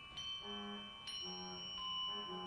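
Organ and percussion music: a high organ tone is held while two bell-like metallic percussion strikes ring out, one just after the start and another about a second in, over short low notes moving step by step.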